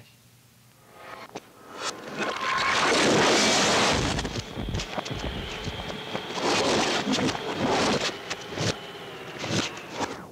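Foley crash and fight effects: a loud, drawn-out smash of breaking furniture and debris builds up about two seconds in, followed by a string of sharp knocks and thumps of blows and bodies hitting the floor.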